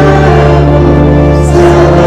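Congregation singing a hymn together over a long held low accompaniment note.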